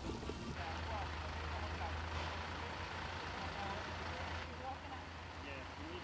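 Outdoor ambience from flood footage: a steady low hum under an even wash of noise, with faint distant voices.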